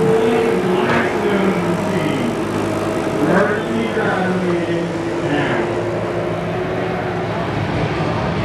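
A wheeled loader's engine running steadily as it pushes a wrecked demolition derby car, with people talking in the background.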